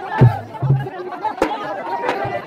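Drums of a Raut Nacha folk dance troupe beat twice and then stop, under loud crowd chatter and shouting. A single sharp crack comes about midway.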